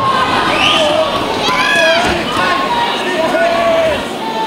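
Boxing crowd in a hall shouting and cheering during an exchange of punches: many voices call out at once over a steady din, with one high shout standing out about halfway through.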